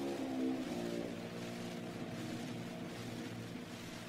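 Closing notes of the instrumental accompaniment on a 1912 His Master's Voice 78 rpm acoustic recording, after the singer's last note, dying away under steady surface hiss and crackle.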